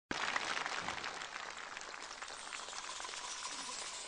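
Audience applauding, a dense patter of clapping that eases off slightly over the few seconds.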